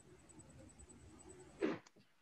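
Near silence: faint background noise on an online call, with one brief sound about one and a half seconds in, after which the line cuts to dead silence.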